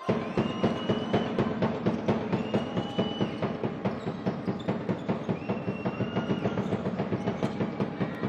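Fast, even drum beat, about four to five beats a second, starting suddenly, with a high held tone sounding over it three or four times.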